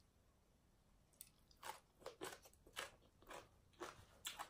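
Close-up crunchy chewing of a mouthful of shredded green papaya salad, starting about a second and a half in as steady crunches about two a second.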